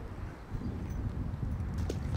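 Wind buffeting the microphone in an uneven low rumble, with a small splash near the end as a caught largemouth bass is tossed back into the pond.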